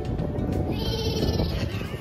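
A child sliding down a corrugated plastic tube slide: a steady rumble through the tube, with a high squeal lasting about a second midway.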